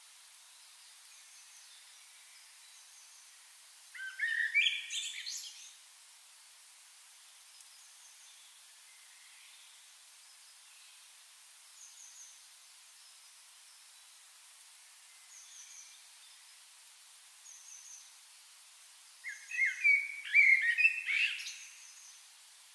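A songbird singing outdoors: two loud, quick warbled phrases, one about four seconds in and one near the end. Faint short high chirps repeat every second or two in between, over a steady background hiss.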